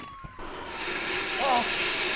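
A dye pack hidden in a bag of stolen money going off: a hiss of red smoke pouring out, growing louder. A siren fades away at the start, and short cries break in about one and a half seconds in.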